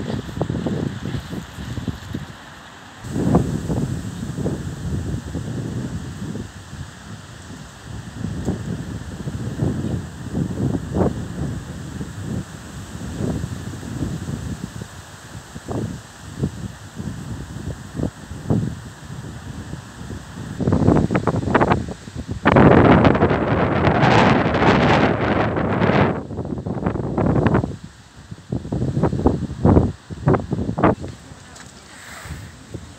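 Gusty wind buffeting the phone's microphone in irregular low rumbles, with a longer, louder gust about three quarters of the way through.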